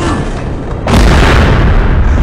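A film explosion: a sudden loud blast about a second in, followed by a low rumble that carries on.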